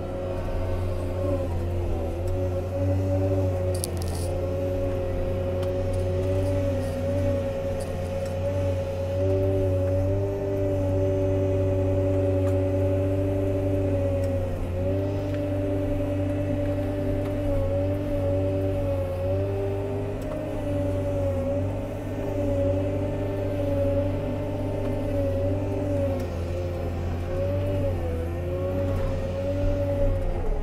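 Komatsu 320 wheel loader's diesel engine, heard from inside the cab, running steadily under load while pushing wood chips up a pile. Its pitch holds level and dips briefly every few seconds.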